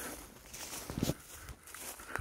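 Faint footsteps and rustling in grass, with a few soft ticks.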